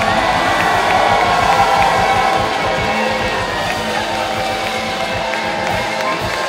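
Live rock band with electric guitars holding long, ringing notes over drums, with a crowd cheering and whooping.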